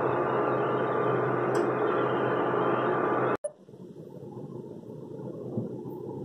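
Steady fan noise and electrical hum of a Pigeon induction cooktop running, which stops abruptly about three and a half seconds in, leaving quieter room noise.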